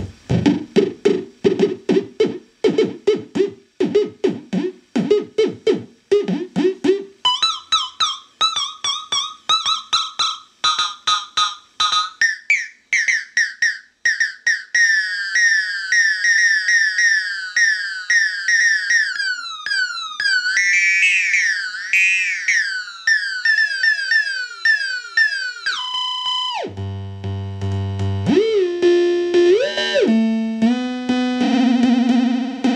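Synthrotek DS-8 clone analog drum synth playing repeated pitched synth-drum hits, about two to three a second, each falling in pitch. About seven seconds in, the hits jump higher in pitch as the knobs are turned. Later, longer decay makes them run together into a continuous warbling tone swept up and down by the LFO, which near the end drops suddenly to a low tone and steps through several pitches.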